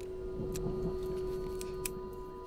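Small sharp clicks of a handgun being handled, a few of them, the loudest near the end, with a brief low rustle of handling. Under them runs a steady held low note of the film score.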